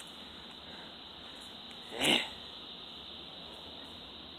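Steady background chorus of crickets. About two seconds in, a short grunted "eh" cuts in over it.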